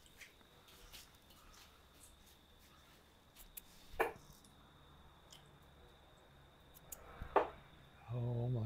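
Two steel-tip darts hitting a Winmau Blade bristle dartboard, each a single short, sharp thud: one about four seconds in, the other near the end.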